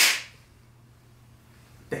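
A single sharp clap of hands, dying away within a fraction of a second, then quiet room tone with a faint steady hum.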